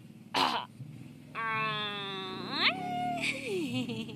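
A baby cooing: a short breathy sound, then one long high-pitched coo from about a second and a half in, ending with a brief rise. A shorter call follows that slides down in pitch near the end.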